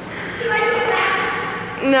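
A high voice holding a long, fairly level call, then a short falling "no" near the end, with the splashing of a swimmer in the pool underneath.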